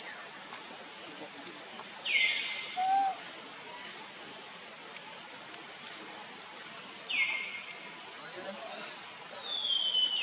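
A steady high insect whine and chirring, over which a bird gives loud calls that sweep down in pitch, twice, then a longer falling glide near the end. A short, fainter call is heard about three seconds in.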